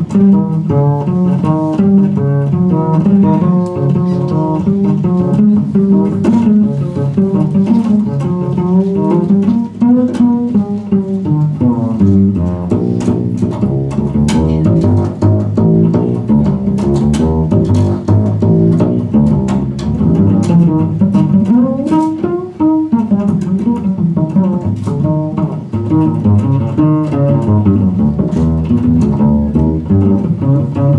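Jazz double bass played pizzicato, a busy line of plucked notes that keeps moving up and down in the low register, with guitar heard alongside.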